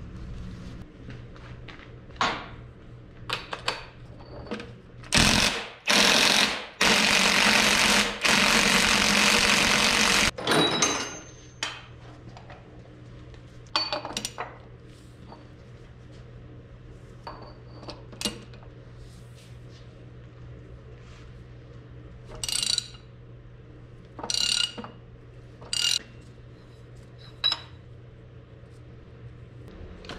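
Impact wrench with a 2-3/4-inch impact socket hammering on the large countershaft nut of an IH 1066 transmission: a short burst about five seconds in, then a longer burst of about three seconds. Scattered ringing metal clinks of tools and parts follow, over a steady low hum.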